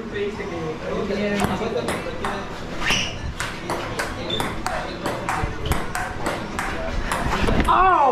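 Table tennis ball clicking back and forth in a long rally, sharp ticks off the paddles and the table a few times a second.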